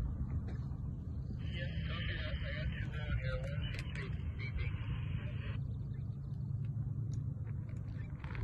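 Wind buffeting the microphone with a steady low rumble. From about one and a half to five and a half seconds in, a hiss of two-way radio static switches on and then cuts off abruptly.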